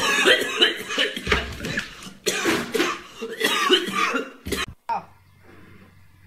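A man coughing and spluttering hard, a run of harsh, loud coughs and voiced gasps that lasts about four and a half seconds and stops abruptly; he is choking on a burning mouthful of noodles with mustard.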